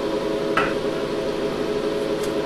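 Steady whir and multi-tone hum of a running ZVS induction heater rig: its radiator cooling fans, water pump and power supply. A brief click comes about half a second in.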